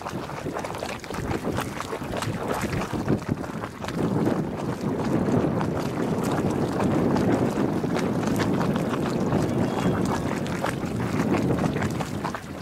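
Hot spring geyser pool water sloshing and gurgling as it pulses and roils at full pool, a continuous watery churning that grows louder about four seconds in.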